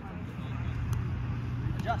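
Outdoor field ambience: a steady low rumble with faint distant voices, and two faint sharp taps about a second apart.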